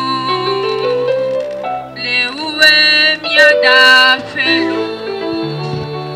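A girl singing solo into a microphone through a PA, with an instrumental backing of held notes and a steady bass. The melody climbs step by step in the first seconds and is loudest from about two and a half to four seconds in.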